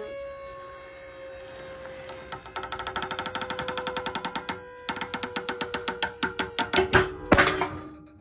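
Pull-test winch running with a steady whine that slowly drops in pitch as the load builds. A Prusik hitch gripping two old 11 mm rescue ropes crackles with rapid clicks as they tighten, getting faster. About seven seconds in, the material breaks with a loud sharp bang, and the Prusik does not slip.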